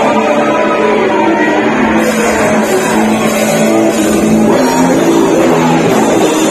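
A live heavy metal band playing loud, distorted electric guitars over drums, heard through the venue's sound system from within the crowd.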